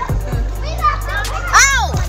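Children's voices calling out over background music, with one high shout that rises and falls in pitch near the end.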